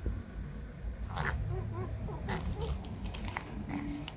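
A cat eating dry kibble from a plastic plate: scattered sharp crunching clicks from chewing, over a steady low rumble. A short wavering vocal sound runs from about a second in to the middle.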